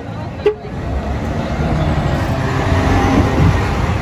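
VDL double-deck coach's diesel engine pulling away, its rumble building as the coach accelerates. A sharp click about half a second in.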